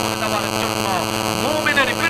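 Steady electrical hum with many overtones from a microphone and public-address system, under a man's amplified voice drawn out in long rising and falling glides.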